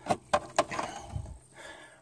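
Three quick sharp clicks in the first half second as crimped ring-terminal wires are lifted off a battery's negative post, then softer handling and a low thump about a second in.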